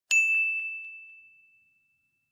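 Notification-bell ding sound effect: one bright strike just after the start, its single high tone ringing and fading away over about a second and a half.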